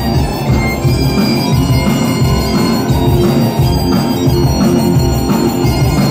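Live Breton punk rock: biniou bagpipes and bombarde playing a steady, loud melody over electric guitar, bass and a driving drum beat.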